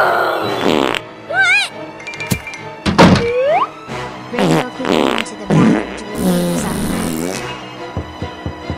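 Cartoon fart sound effects for a pony with an upset, gassy stomach: a run of short blasts and one long blast near the end, with a thud and a rising whistle about three seconds in. Background music plays under them.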